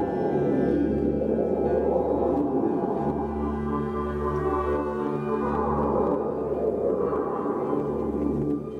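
A live band playing a dense, droning passage: held tones over a repeating low note that pulses about twice a second.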